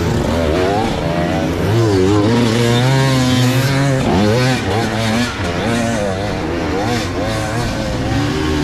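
Hard enduro dirt bike engine revving up and down again and again as the throttle is worked on and off, with spectators' voices mixed in.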